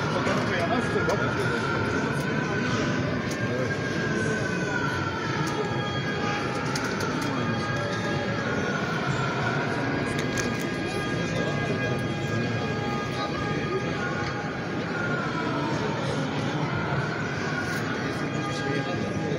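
Men's voices chanting a slow religious melody, the long held notes slowly rising and falling, over the noise of a large crowd inside a mosque.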